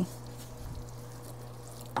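Orzo and mushrooms cooking in a skillet as they are stirred with a wooden spatula: a faint, steady bubbling over a constant low hum.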